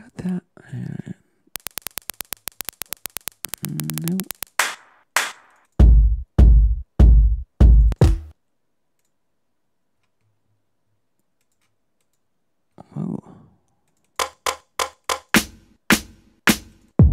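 Drum one-shot samples played back one after another. First a rapid run of clicks, then a short pitched hit, then five heavy bass-drum hits a little over half a second apart. After a few seconds' pause comes a quick run of sharp snare-like hits near the end.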